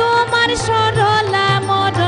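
Bengali folk song played by a small ensemble of harmonium, bamboo flute and tabla, with a melody line gliding between notes over a sustained low drone.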